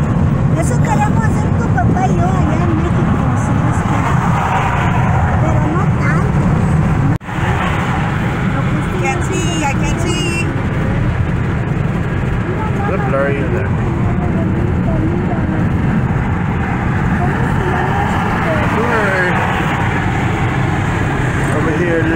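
Steady road and engine noise inside a moving Mazda car's cabin, with faint voices over it. About seven seconds in, the sound drops out for an instant where the recording is cut.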